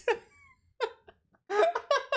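A man laughing hard in a quick run of repeated bursts, starting about one and a half seconds in, after a short high squeak about half a second in.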